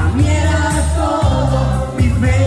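A man singing a Spanish-language romantic song into a microphone over an amplified backing track, with other voices singing along.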